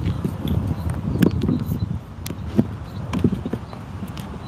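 Handling noise from a phone held against clothing: a low rumbling rub with scattered, irregular clicks and knocks.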